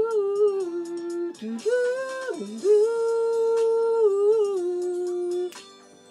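A man singing wordless, drawn-out vocal runs into a handheld microphone over faint backing music. The runs end in one long held note that stops about five and a half seconds in.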